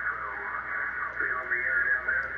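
Single-sideband voice from amateur stations on 20 metres heard through an Elecraft K3 receiver, with the power-line noise held down by the NR-1 noise reduction unit so the voices come through. The audio is narrow and cut off above about 2.5 kHz, with a steady hiss under the voices.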